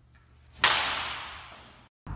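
A baseball bat strikes a ball once, about half a second in: a single sharp crack with a long echoing tail that dies away over about a second in the indoor batting cage.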